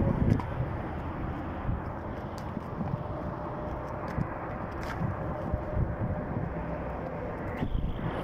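Steady low rumbling noise of wind and handling on a phone microphone carried by a rider on a moving horse, with a few faint irregular thuds.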